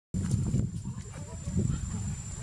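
Low rumbling handling and movement noise from a handheld camera being carried along, with a brief, faint voice sound about a second in.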